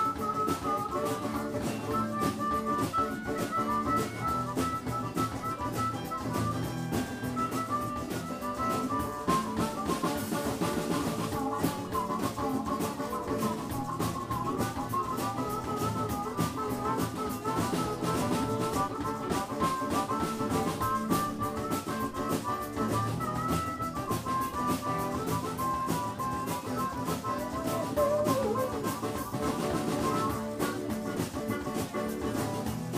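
A live blues band plays an instrumental stretch: drum kit and bass keep a steady groove under guitar, while a lead melody winds above it.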